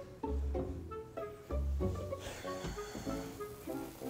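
Quiet suspense background music: short plucked string notes over low bass notes that come in at intervals.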